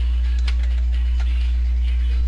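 Steady low electrical hum in the narration recording, with faint steady higher tones above it, and a faint click about half a second in.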